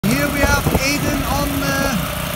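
Small petrol engine of a Bertolini walk-behind rotovator running steadily while it tills the soil, with a person's voice talking over it.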